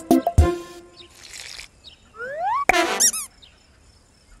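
Cartoon sound effects over light music: a few plucked notes, a short breathy hiss, then rising whistle-like glides, a sharp click and a wobbling, boing-like warble about three seconds in, comic sounds for a failed try at blowing a bubble.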